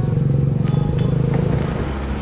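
Motorcycle engine idling: a steady low note with a fast, even pulse, easing off slightly near the end.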